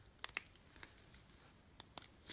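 Scissors snipping through acrylic yarn wound on a plastic pom-pom maker as the blades cut along its track: a few faint, sharp snips, two early, one around the middle and two close together near the end.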